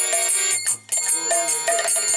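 Folk devotional music: harmonium chords with small brass hand cymbals (kartal) ringing and khol drum notes. The music breaks off briefly a little under a second in, then resumes.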